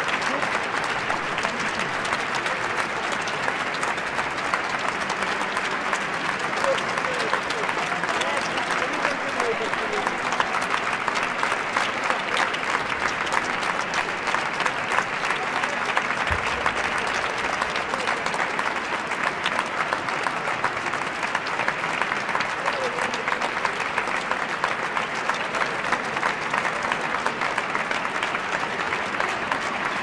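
Large crowd of audience and performers applauding, a dense, even clapping that holds steady throughout.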